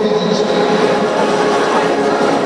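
Steady din of a busy indoor arena: many people talking at once, blurred together by the hall's echo.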